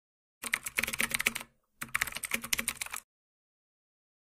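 Computer keyboard typing: rapid keystrokes in two runs of about a second each, with a brief pause between them.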